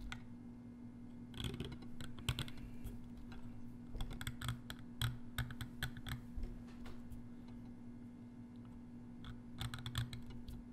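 Steel carving knife cutting and chipping a stone seal: irregular small clicks and scrapes in clusters, thinning out for a couple of seconds before picking up again near the end. A steady low hum runs underneath.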